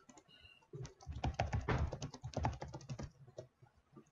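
Typing on a computer keyboard: a quick run of keystrokes lasting about two seconds, starting just under a second in.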